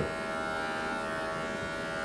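Steady electric hum with a buzzing edge of several even tones, level and unchanging.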